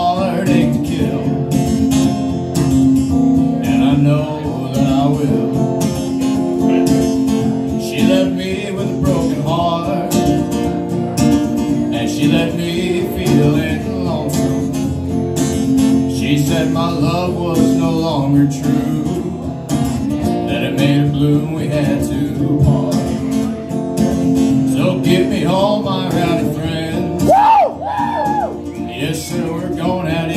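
A man singing while strumming an acoustic guitar, live solo performance of a song, with a long held sung note that rises and falls near the end.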